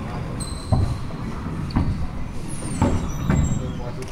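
Handball rally in an enclosed four-wall court: four or five sharp slaps of the ball off hand, walls and floor, echoing in the court, with sneakers squeaking on the hardwood floor.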